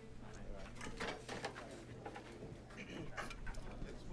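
Faint office background: low murmured voices and scattered light clicks over a steady low hum.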